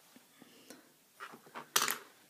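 Makeup containers being handled: a few light clicks, then a short clatter of hard objects knocking and clinking together near the end, the loudest of it just before the end.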